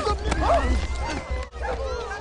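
A voice making wordless sounds, its pitch sliding up and down, over a faint held tone.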